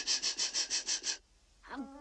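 A cartoon python's rapid, rhythmic hissing: short breathy hisses at about eight a second, stopping a little over a second in.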